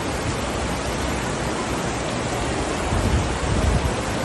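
Steady rushing noise of floodwater pouring and running across a tiled floor, with a few louder low bumps near the end.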